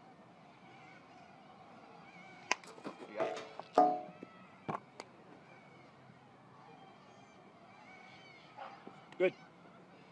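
A few sharp knocks from baseball batting practice: a bat striking tossed balls, one about two and a half seconds in and two close together about five seconds in.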